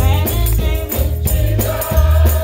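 Gospel choir singing with a band, over a deep bass line and drums keeping a steady beat.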